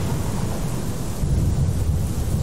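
Storm sound effect: a steady deep rumble of thunder under a rushing hiss of rain and wind.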